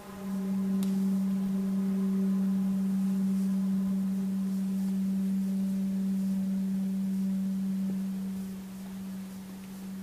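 Kyotaku, the Japanese zen bamboo end-blown flute, sounding one long low note that holds for about eight seconds and then fades. A faint click comes about a second in.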